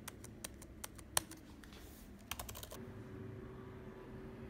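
Keys on a MacBook Air M1's built-in keyboard being pressed one at a time, giving irregular light clicks with a quick run of several presses, then stopping about three quarters of the way in. The keys are being tested on a machine whose keyboard and trackpad don't respond.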